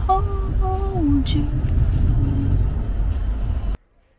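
Low, steady road rumble inside a moving car, with a drawn-out vocal 'ooh' for about a second at the start. The sound cuts off abruptly shortly before the end.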